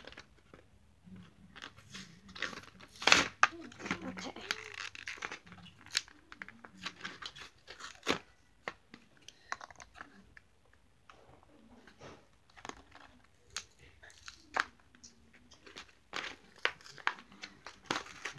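Clear plastic toy packaging crinkling and tearing as it is worked open by hand, in irregular crackles and snaps, the loudest a sharp crack about three seconds in.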